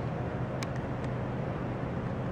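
Steady hum and fan noise of a running bench air-conditioning system trainer circulating refrigerant, with a couple of faint ticks.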